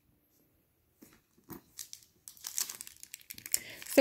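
Rustling and crinkling of bags being handled: scattered light rustles and clicks start about a second in and grow denser and louder over the last two seconds.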